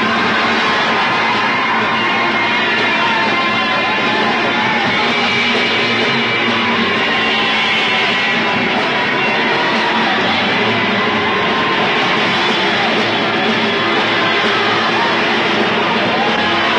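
Live band playing rock 'n' roll with electric guitar, steady and continuous, with no vocal.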